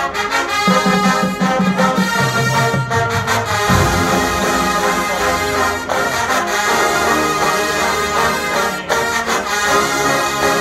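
Marching band playing its field show live: sustained brass chords over a low bass line that steps down in pitch in the first few seconds.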